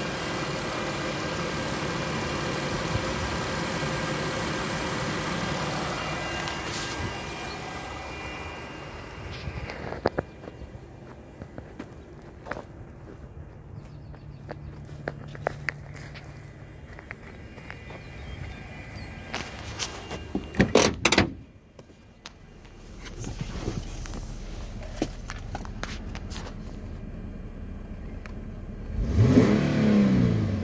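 2015 Infiniti Q50's V6 engine idling steadily, heard close up at first and quieter from about a third of the way in. About two-thirds through come a few loud knocks, after which the engine is heard as a low muffled hum. Near the end the engine is revved, rising and falling in pitch.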